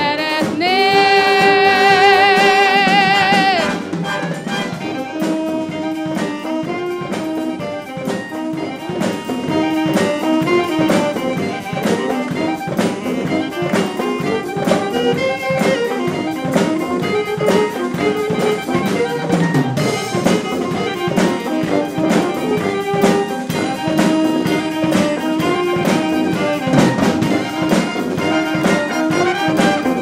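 Wind band playing a pop-song arrangement, with brass and clarinets. For the first few seconds a female soloist holds one long note with vibrato over the band, then the band carries on on its own.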